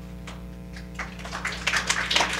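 Audience applause starting about a second in and quickly growing louder and denser, over a steady electrical hum from the room's sound system.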